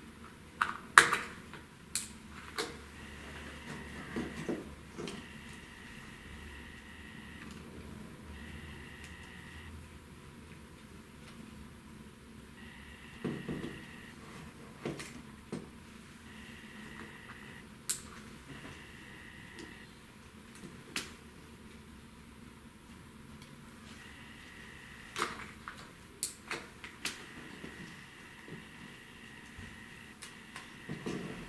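Scattered clicks and taps of small plastic and metal parts as a portable Digital Compact Cassette player is taken apart by hand and its top plate is lifted off. A faint high steady tone comes and goes in short stretches.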